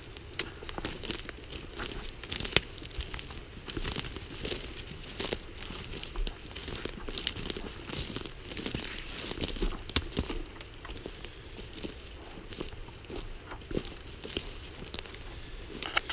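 Footsteps crunching through dry pine needles, twigs and leaf litter on a forest floor, with irregular snaps and crackles as sticks break underfoot.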